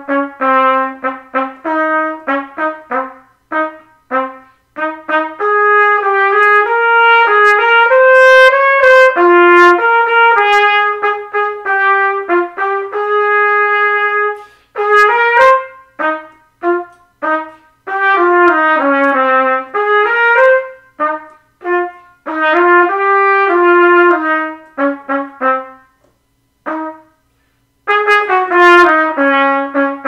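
A single trumpet playing the lower line of a duet in its low-to-middle register: short, separated notes at first, a run of longer held notes in the middle, then more short notes with a brief pause near the end.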